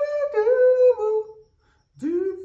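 A man humming a long, high held note that steps down slightly in pitch and stops about one and a half seconds in; another note begins right at the end.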